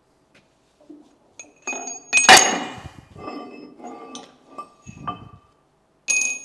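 Heavy steel press tooling handled on a steel press table: one loud metal clank a little over two seconds in that rings on briefly, followed by several lighter knocks and clinks of steel on steel.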